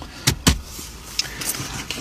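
Three sharp clicks in the first half second, then two fainter ticks: a hand handling the automatic gear selector and centre-console trim inside a car.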